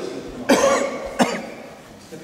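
A person coughing twice, a longer cough about half a second in and a sharper, shorter one a little after a second in.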